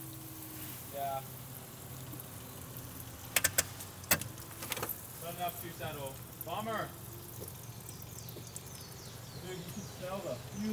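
Fuel spraying and dribbling from a leak in the engine bay of a Nissan S15 Silvia, over a faint steady hum, with a few sharp clicks about three and a half to four seconds in.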